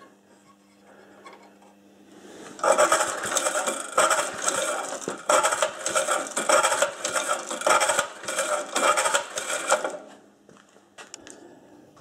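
Old Briggs & Stratton lawn mower engine being cranked over without starting, to check for spark at the plug. A dense, rapidly pulsing mechanical run begins about two and a half seconds in and stops near ten seconds.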